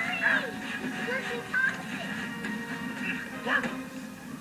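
Cartoon soundtrack: background music under short, high-pitched squeaky vocal calls from a cartoon character, chattering rather than speaking words.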